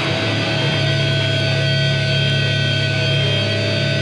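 Hardcore band recording: loud distorted electric guitar and bass holding a sustained chord, with steady ringing overtones throughout.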